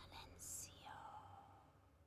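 A woman softly whispering a single word, 'Silencio', in two hissy syllables that trail off into a falling vowel, over a faint low hum.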